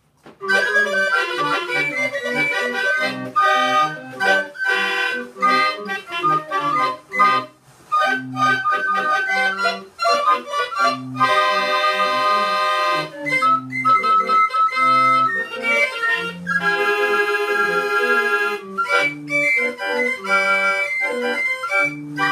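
Small wooden pipe organ playing a tune: a melody over a steady repeating bass line, starting about half a second in, with a couple of brief breaks along the way.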